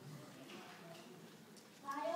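Faint, indistinct voices murmuring in a hall; a louder voice starts speaking just before the end.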